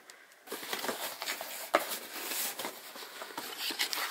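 A cardboard shipping box being opened by hand: rustling and scraping of cardboard and packing, with scattered clicks, starting about half a second in.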